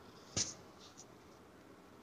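A single short, sharp click about half a second in, followed by a much fainter tick about a second in.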